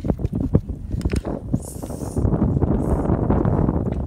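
Wind rumbling on the phone's microphone, heavier from about halfway through, with scattered knocks and rustling from the phone being handled.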